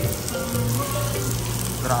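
Meat sizzling on a tabletop Korean barbecue grill, a steady hiss of frying, with background music playing.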